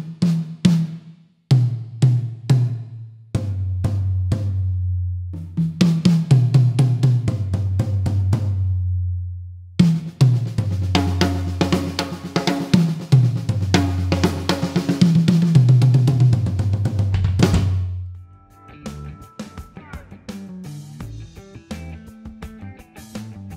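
Pearl Vision drum kit with freshly tuned toms played by hand: a few separate tom strokes, then a beat with tom fills and Sabian cymbals and hi-hat, the toms ringing on with long sustain. The playing stops about three-quarters of the way through and the kit rings out.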